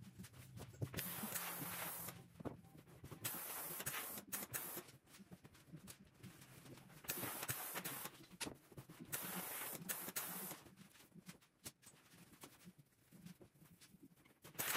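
Steam-generator iron puffing steam while clothes are pressed: four hissing bursts of about a second and a half each, with light knocks and fabric handling between them.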